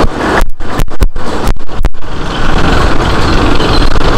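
Loud, continuous rumbling road noise from a two-wheeler riding slowly along a narrow lane, cutting out sharply for moments several times in the first two seconds.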